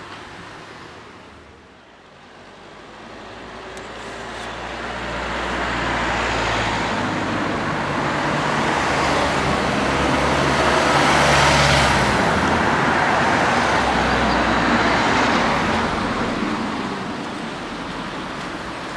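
A passing motor vehicle, out of sight, swelling to its loudest about eleven seconds in and then fading away.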